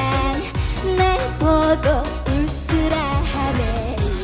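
A woman singing an upbeat trot song live into a microphone, backed by a band with a steady drum beat and keyboards.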